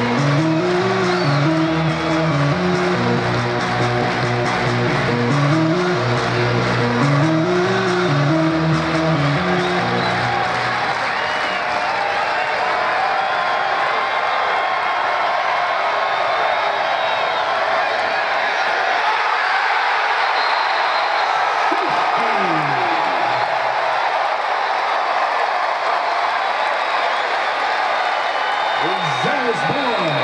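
Music with a repeating bass riff for about the first ten seconds, then steady crowd noise from a football stadium's stands, with a few voices calling out near the end.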